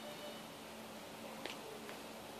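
Quiet room tone with a faint steady hum, broken by two small clicks in the second half.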